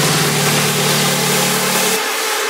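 Electronic trance music: a sustained low synth note under a dense noise wash, with no beat. The bass drops out right at the end.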